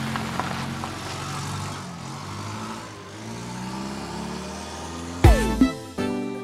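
A minibus van driving along a road, its engine running with tyre noise. About five seconds in, a loud hit with a falling sweep cuts in and music begins.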